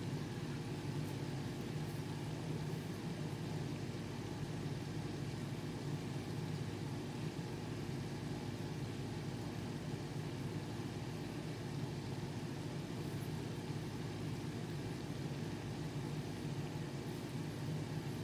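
A steady low hum, several held low tones over a faint even hiss, unchanging throughout, like a running appliance or fan in the room.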